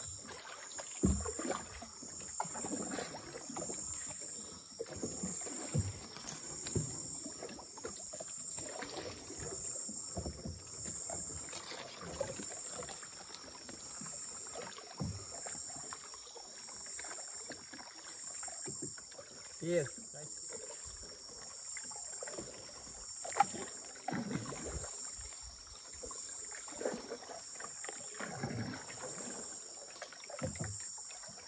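Wooden dugout-style canoes being paddled: irregular paddle strokes dipping and splashing in the water, with occasional knocks of a paddle against the wooden hull, one sharp knock about two-thirds of the way through being the loudest. Behind it, insects buzz in a steady high chorus with a slow pulse.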